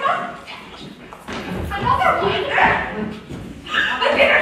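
A stage actor's loud, shouted voice in a large hall, with thuds of feet on the stage.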